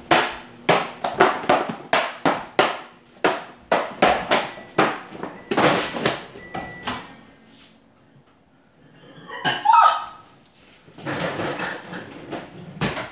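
A quick run of sharp thumps, two or three a second, stopping about seven and a half seconds in, then a brief squeak near ten seconds.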